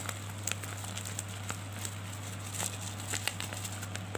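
Light scattered crackles and clicks of a cardboard box and plastic bubble wrap being handled, over a steady low hum.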